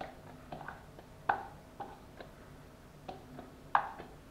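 A plastic mixing bowl tapped and shaken upside down to knock chopped bacon out onto minced meat in another bowl: a string of light, irregular taps and clicks, with a louder knock about a second in and another near the end.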